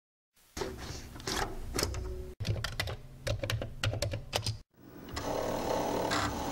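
Irregular key clicks and clacks, as from typing on a Commodore 64 keyboard, twice cut off abruptly. Near the end they give way to a steady whir, as the Commodore 1541 floppy disk drive runs.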